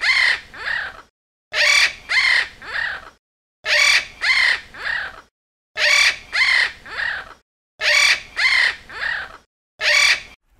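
Blue-and-yellow macaw squawking: harsh calls in groups of three, each call falling in pitch, with the same phrase coming about every two seconds.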